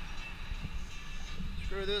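Hand tools working on a go-kart's fuel tank mounting: a few faint clicks as a bolt is screwed back in, over a steady low rumble. A man's voice starts near the end.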